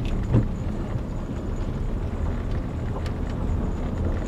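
Land Rover Discovery engine and drivetrain rumbling steadily, heard from inside the cabin as it drives slowly in second gear in low range, with a brief knock about half a second in.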